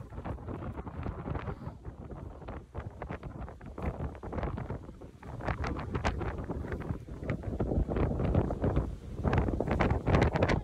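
Strong wind buffeting the microphone in uneven gusts, a low rumble that grows louder near the end, with scattered short crackles.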